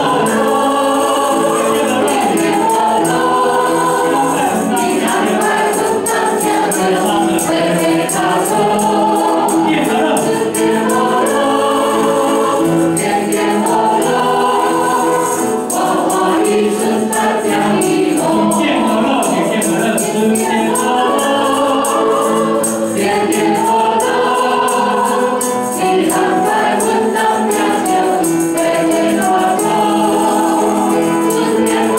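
Worship singers singing a Mandarin hymn together through microphones, with piano accompaniment and a tambourine shaken in rhythm.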